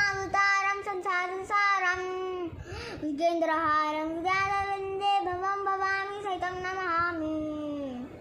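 A child singing solo and unaccompanied, holding long steady notes, with a short breath about three seconds in. The pitch sinks lower on the last note near the end.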